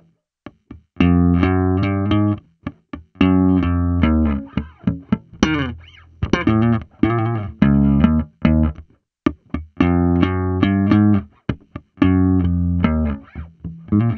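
Washburn Taurus T-24 four-string electric bass played solo, slapped and popped in short syncopated phrases with muted ghost notes, broken by brief rests.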